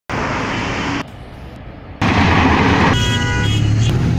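Road traffic noise with a vehicle engine rumbling, dropping away abruptly for about a second before returning louder. A car horn sounds from about three seconds in.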